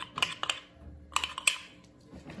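Light clicks and taps of a spoon against a ceramic cup and plastic mixing bowl as tapioca starch is tipped out of the cup. The clicks come in two short groups about a second apart.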